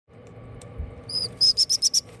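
Baby parrot chicks peeping: one high peep about a second in, then a quick run of five short high peeps near the end, over a faint steady hum.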